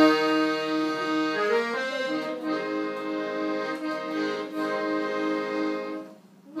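Piano accordion playing: held chords start at once, then a melody moves over a low note pulsing about three times a second.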